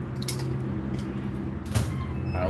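Two brief knocks, about a third of a second in and near the end, over a steady low hum.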